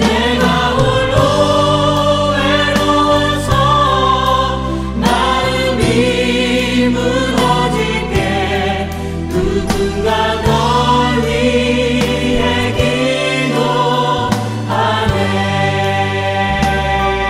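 Choral Korean Christian worship song (CCM): a choir sings long, wavering held notes over a steady instrumental accompaniment with a sustained bass.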